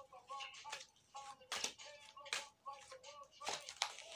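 A deck of tarot cards shuffled by hand, the cards slapping together in short sharp clicks about eight times.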